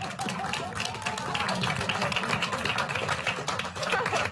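A small room of people applauding, with dense clapping that starts at once and keeps going, and a few voices cheering over it.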